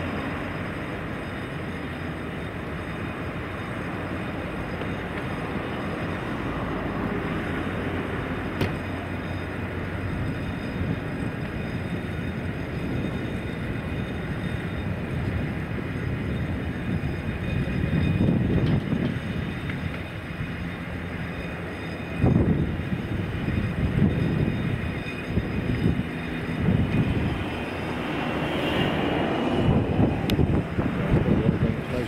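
Crane engine running steadily while lifting a boat, a continuous mechanical rumble, with wind buffeting the microphone in uneven gusts in the second half.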